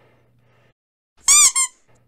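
A high-pitched squeak about a second and a quarter in, bending up and back down, followed at once by a second, shorter squeak.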